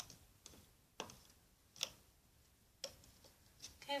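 Faint, irregular light clicks, about six in four seconds, as a plastic hook tool works rubber bands off the pins of a plastic Rainbow Loom.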